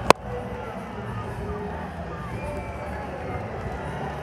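A single sharp crack of a cricket bat striking the ball just after the start, followed by a steady hubbub of a stadium crowd.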